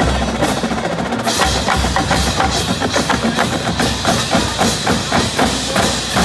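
Marching band drumline playing a fast percussion passage: a rapid, even run of crisp drum strikes with deep bass-drum hits underneath, growing brighter a little over a second in.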